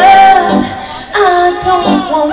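A live band with a woman singing lead. She holds a long note at the start, and a new sung phrase begins about a second in.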